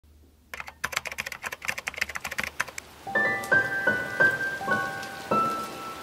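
Rapid keyboard typing clicks for about two seconds, then piano music starts about three seconds in, a light melody of single struck notes.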